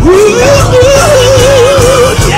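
Gospel singing: one voice swoops up into a long held note with a wide vibrato, over backing music with a steady bass.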